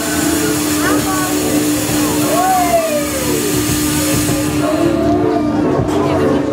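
Fog jets on a Fabbri Kamikaze 3 ride releasing smoke with a loud steady hiss that fades just before the end, over a steady low hum.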